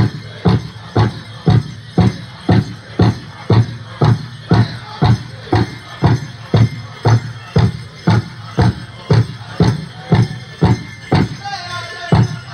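Powwow drum group beating a large drum in a steady, even beat of about two strokes a second, with singers' voices over it.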